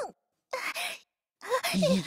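Cartoon voice acting in Mandarin: a few short hums ("嗯"), then a sighing "ai" as a character begins to speak, about a second and a half in.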